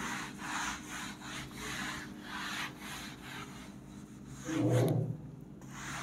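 A whiteboard eraser rubbing back and forth across a whiteboard, wiping the writing off in a quick run of scrubbing strokes. A brief, louder low sound comes about four and a half seconds in.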